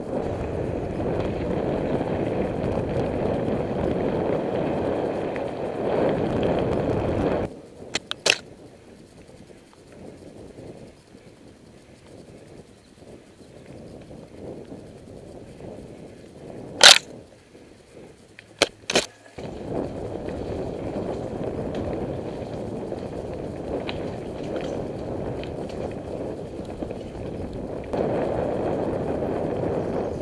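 A mountain bike being ridden, heard from a camera on the bike or rider. A steady rumble of tyres and moving air runs for about the first seven seconds, then drops to a quieter stretch broken by a few sharp clicks. The rumble returns and grows louder again near the end.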